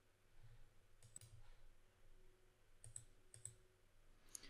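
Near silence with a few faint computer mouse clicks, coming in quick pairs about a second in and twice near the end.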